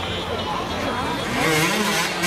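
Enduro motorcycle engine revving as the bike struggles on a steep rocky climb, mixed with the chatter of spectators; the sound grows louder about halfway through.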